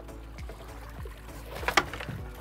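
Outboard boat engine idling with a low steady rumble, with faint music over it, and near the end a short, loud splash and knock as a mahi is gaffed at the side of the boat.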